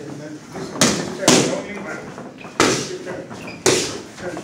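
Boxing gloves striking focus mitts: four punches, the first two about half a second apart, each a sharp smack.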